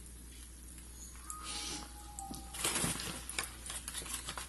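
Quiet kitchen handling noises: a short rustle about two and a half seconds in, followed by a few light clicks and knocks.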